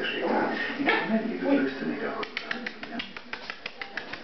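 Voices in the room for the first two seconds, then a run of quick, irregular light clicks from a little past halfway: small puppies' claws clicking on a ceramic tile floor as they play.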